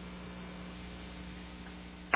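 Steady electrical hum with a low hiss, and no other sound.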